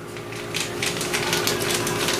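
Elevator car running: a steady hum with a rapid, irregular run of ticks and clicks.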